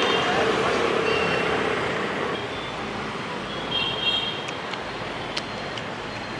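Road traffic noise from a busy street: a steady hum of passing vehicles that eases a little about halfway through.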